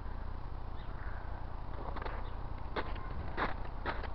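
Footsteps crunching on packed snow, beginning about halfway through at roughly two steps a second, over a steady low rumble of wind or handling noise on the microphone.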